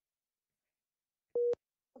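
Dead silence, then a single short telephone-line beep, one steady mid-pitched tone about a fifth of a second long, about a second and a half in, ending with a click.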